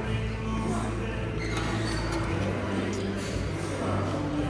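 Background music with held bass notes playing over the low chatter of a busy restaurant dining room.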